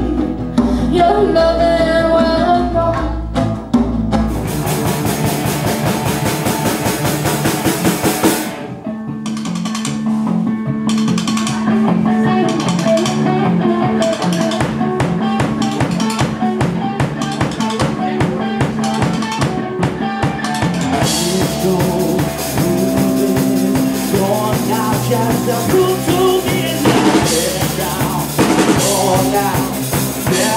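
Live band music with a drum kit to the fore. It changes abruptly a few times, as cut-up segments of different performances follow one another.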